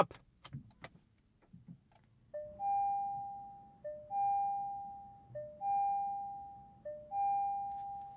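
2024 Dodge Hornet R/T's loud start-up chime: a two-note ding-dong, a short lower note then a longer, fading higher one, repeated four times about every second and a half. No engine is heard, because the car starts in hybrid or e-drive mode with the gas engine off. A few soft clicks from pressing the start button come first.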